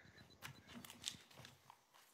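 Near silence: room tone with a few faint, brief clicks and rustles.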